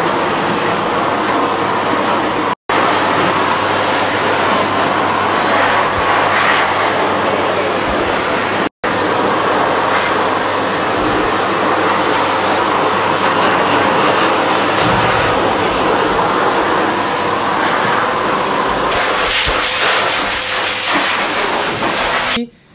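Handheld shower spraying water onto a large dog's coat in a stainless steel grooming tub: a steady rushing hiss that drops out briefly twice.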